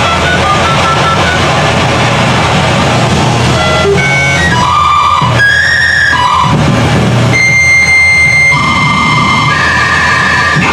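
Loud harsh-noise music: a dense, distorted wall of noise with a low rumble. From about four seconds in, sustained electronic tones sound over it, jumping from pitch to pitch.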